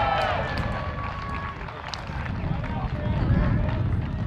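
Footballers shouting and cheering on the pitch after a goal, loudest in the first second or so, over a steady low outdoor rumble.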